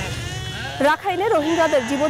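Sheep in a flock bleating: one long, steady bleat ends just after the start and a fainter, wavering bleat follows before a voice takes over.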